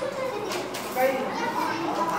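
A group of young children chattering, several voices overlapping.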